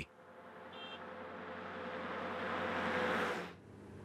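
A truck approaching along the road, its engine and tyre noise growing steadily louder for about three seconds and then cutting off abruptly. A brief high chirp sounds about a second in.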